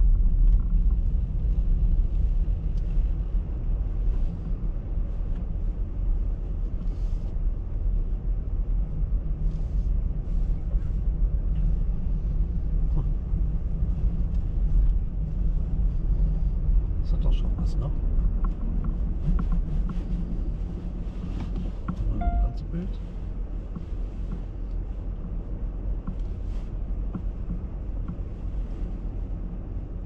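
Tyre and road rumble heard inside the cabin of a car driving slowly over a snow-covered road: a steady low rumble that eases off in the last third as the car slows to a stop. A few faint ticks and a short tone sound in the middle.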